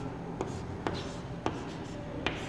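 Chalk writing on a blackboard: faint scratching of the strokes with three sharp taps as the chalk strikes the board.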